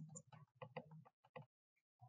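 Faint computer keyboard keystrokes: a quick run of key presses, about six a second, stopping about one and a half seconds in, as text is deleted.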